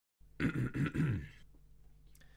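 A man clearing his throat: three short grunts in quick succession, each falling in pitch, lasting about a second.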